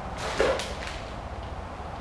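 A single short rustle or swish, about half a second in, as a plastic package of soft-plastic fishing worms is grabbed. Only low room noise follows.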